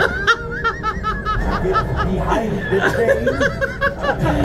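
People laughing in quick, repeated bursts over a steady low rumble from the motion-simulator ride's soundtrack.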